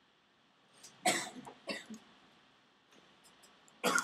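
A person coughing: a couple of short coughs about a second in, and another just before the end.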